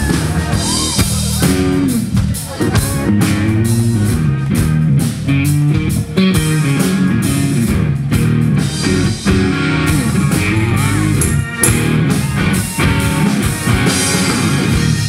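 Live rock band playing an instrumental passage: electric guitar with notes gliding in pitch over a driving drum kit and bass.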